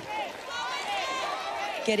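Spectators shouting encouragement and cheering, several voices overlapping, with the commentator's voice coming back in near the end.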